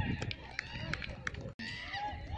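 Distant shouts and calls of cricket players across an open ground, with a few faint clicks; the sound cuts out for an instant about one and a half seconds in.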